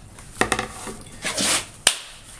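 Small handling noises: a light click about half a second in, a brief rustle, and a sharp tap just before the end.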